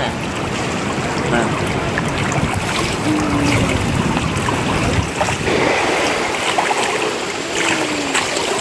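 Pool water splashing and churning around a swimmer in a mermaid tail, arms sweeping through the surface. It is a steady wash of water noise with no single loud splash.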